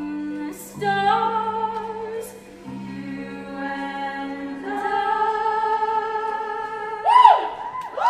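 A group of women's voices singing long held notes in harmony, with vibrato, over a small band, changing chord every second or two. About seven seconds in, a louder note swoops up and back down.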